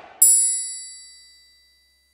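A single bright metallic ding, a chime sound effect. It strikes suddenly and leaves a high, shimmering ring of several tones that fades out over about a second and a half.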